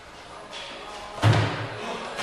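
Feet coming down from a handstand onto a rubber gym floor, landing once with a heavy thud about a second in, with a short ring in the room after it.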